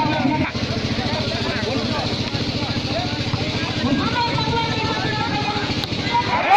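An engine running steadily, with an even, rapid pulse, under a crowd's chatter.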